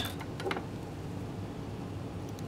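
Fly-tying scissors snipping at the vise: a couple of faint small clicks in the first half-second over a low steady room hum.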